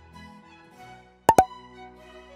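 Light background music, with two quick pops about a second and a half in that are the loudest sounds here.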